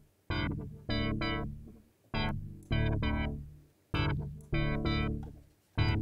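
Synthesized UK garage chord stabs from an Xfer Serum preset, played in a repeating syncopated pattern of three short chords about every two seconds, each decaying quickly. The chords run through a low-pass filter with resonance whose cutoff is swept by an LFO, giving a wobbly, fast filtered effect.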